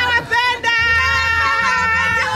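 A young female voice holding one long high note, sung or called out in greeting, after a short break about half a second in.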